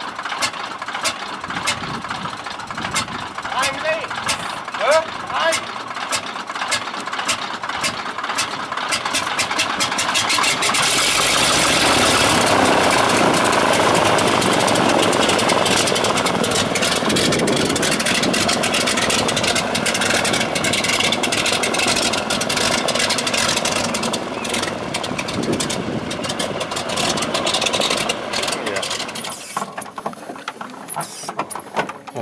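DHC-2 Beaver floatplane's nine-cylinder Pratt & Whitney R-985 radial engine running with a lumpy, pulsing beat. About ten seconds in, power comes up sharply and the engine gets much louder, with propeller wash blasting spray off the water as the plane taxis away. Over the following seconds it eases back to a pulsing beat and grows fainter.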